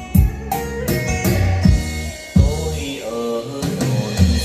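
Recorded song with a voice singing over heavy, punchy bass and drum beats, played through a pair of Yamaha NS-2835 floor-standing speakers with two 20 cm woofers each; the bass hits are tight.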